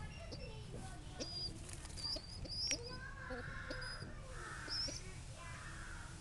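Young pigeons peeping with short squeaky calls, scattered among higher quick chirps. Three brief rustling bursts come in the second half.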